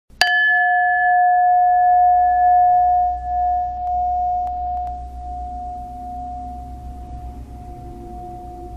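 A bell struck once just after the start; its single clear tone rings on, slowly fading.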